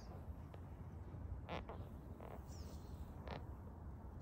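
Massage table creaking a few short times under the therapist's pressure, faint, over a low rumble, with a small bird chirping high up every second or two.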